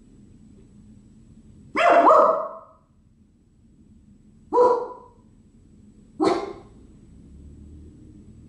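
Small Lhasa Apso–Shih Tzu–Poodle mix dog barking three times, a couple of seconds apart. The first bark is the longest, a quick double bark.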